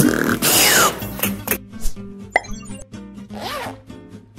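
Logo-animation sound effects over background music: a loud whoosh with a falling sweep in the first second or so, then scattered pops and clicks and a short chirp.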